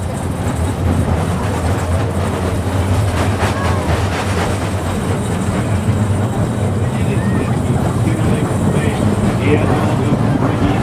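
Mine-train roller coaster cars rolling slowly along the track with a steady low rumble, with faint voices of riders and onlookers.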